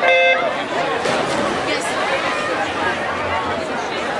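A swim-meet electronic start signal gives one short beep, about half a second long, starting the race, followed by a steady hubbub of crowd voices.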